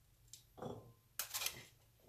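A metal spoon scraping in a mesh strainer and cooked chickpeas dropping into a glass bowl, in two short bursts about half a second apart, the second one brighter and harsher.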